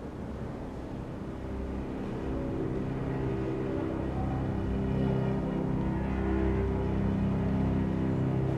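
Tense dramatic underscore: a low, held drone of sustained notes that slowly swells louder.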